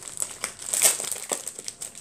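Packaging crinkling and rustling as an item is handled and unwrapped: a dense run of irregular crackles.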